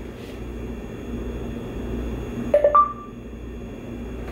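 A short electronic beep from the Lighthouse security camera app, a lower tone then a higher one, as two-way talk connects. A steady low hum and hiss of the camera's live audio feed runs underneath.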